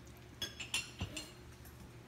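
Plastic cereal bag crinkling in a few short crackles as a small monkey handles it, clustered in the first second.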